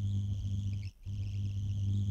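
A steady low electrical-sounding hum with a faint high whine above it, cutting out briefly about a second in and then resuming.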